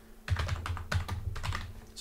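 Computer keyboard typing: a quick run of keystrokes starting about a quarter second in, entering a command at a Linux terminal.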